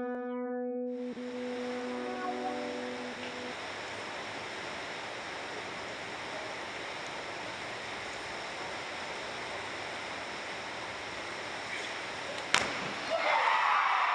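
A short synthesized logo chime: a held chord that fades out over the first few seconds. It gives way to the steady hiss of a large indoor pool hall. Near the end comes one sharp slap of divers entering the water, and crowd noise swells after it.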